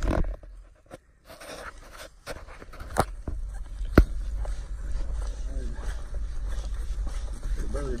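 Footsteps of a person walking briskly through grass and then dry leaf litter, over a steady low rumble of handling noise. Sharp clicks come about three and four seconds in.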